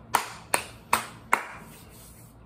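Four hand claps, evenly spaced about two and a half a second.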